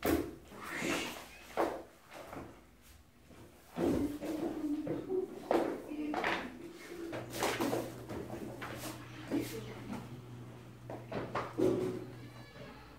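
Books and magazines being set down and shuffled on a wooden floor: an uneven string of knocks and scrapes. A steady low hum comes in about seven seconds in.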